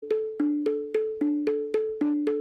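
Duggi tarang, a set of small tuned hand drums, struck by hand in quick strokes about four a second. The strokes alternate between two pitches, and each one rings with a clear tone.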